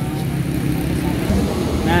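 Road traffic on a city street: a steady low rumble from passing cars and motorbikes.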